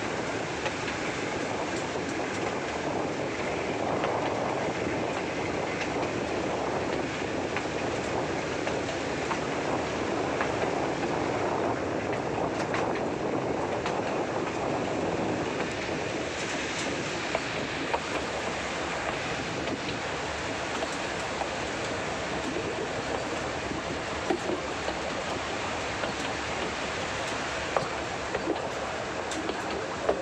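Nilgiri Mountain Railway toy train running along its metre-gauge track, heard from on board: a steady rumble of the carriages with scattered clicks from the wheels, a few of them louder in the second half.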